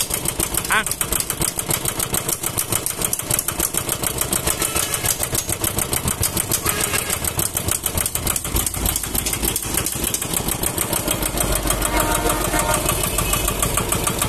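Kubota ER-series single-cylinder diesel engine of a Kubota ZK6 walk-behind tiller idling steadily with a rapid, even knock.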